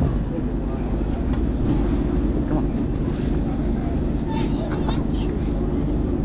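A large vehicle engine idling nearby, a steady low drone that does not change.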